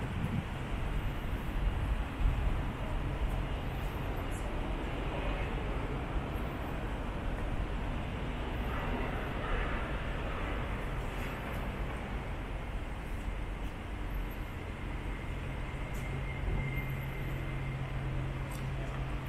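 Steady city background noise with a constant low hum, typical of distant traffic and building ventilation plant around an enclosed courtyard.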